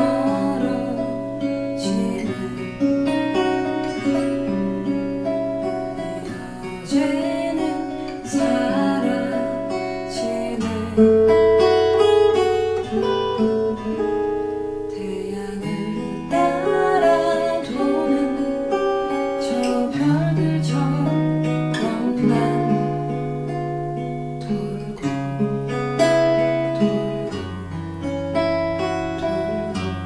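Cort Gold-O6 acoustic guitar with a capo, played fingerstyle: a picked melody over sustained bass notes that change every few seconds.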